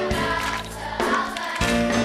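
Children's choir singing over a live band with bass guitar and drums, a song with a steady beat.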